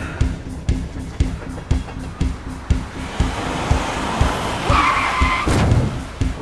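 Orchestral score with a steady pulse about twice a second. From about halfway the noise of a car builds, ending in a tyre screech under hard braking near the end, followed at once by a thump.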